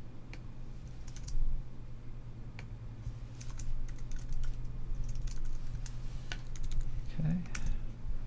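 Typing on a computer keyboard: short keystroke clicks in irregular small bursts, over a low steady hum.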